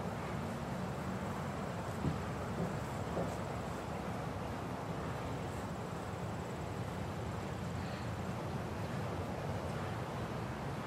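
Steady outdoor background noise, mostly a low rumble with a hiss over it, with a few soft knocks about two to three seconds in.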